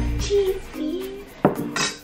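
Kitchen handling sounds at a counter, with one sharp knock or clink about one and a half seconds in.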